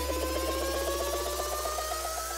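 Electronic dance music build-up: a sustained low bass drone under slowly rising synth tones and a fast, even rhythmic pulse.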